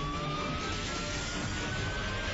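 A fire engine siren wailing, its single tone gliding slowly upward in pitch, over a steady low rumble of vehicle engines.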